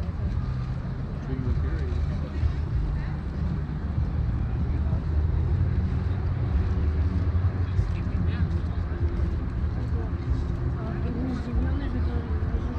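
Outdoor city street ambience: a steady low rumble with the voices of passers-by talking.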